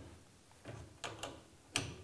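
A few light metallic clicks and taps as the chain trolley's tension nut and a wrench are handled on a chain-drive garage door opener rail; the sharpest click comes near the end.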